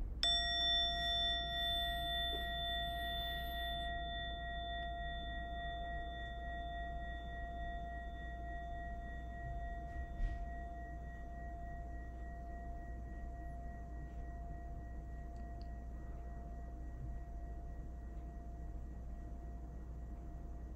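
A meditation chime struck once, ringing out with several clear tones that fade slowly; the higher tones die away within a few seconds and the lowest keeps ringing softly. It marks the end of a mindful breathing minute, to be listened to until it can no longer be heard.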